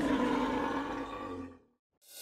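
A long, bull-like bellowing roar, held at one pitch and fading out about one and a half seconds in.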